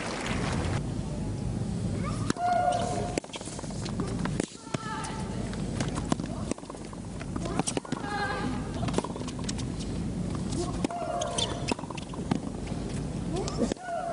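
Tennis rally: the ball struck by rackets every second or two, several of the strikes with a player's loud shriek, over a steady crowd murmur.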